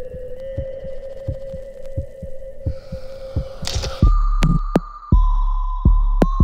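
Ominous film score and sound design. A sustained held tone with faint low ticks, about three a second, swells up; then, about four seconds in, it drops into a loud deep bass drone with heavy low thumps roughly a second apart and a higher held tone.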